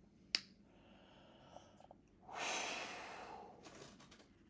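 A single sharp click about a third of a second in, then a man's long breath out, a sigh through the nose close to the microphone, starting about two seconds in and fading over a second.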